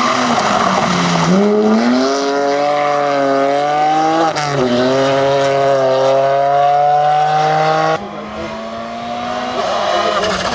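BMW 1 Series rally car's engine accelerating hard, its pitch climbing steadily with one quick gear change about four seconds in, then climbing again. It cuts off suddenly near the end to the quieter sound of another rally car's engine approaching.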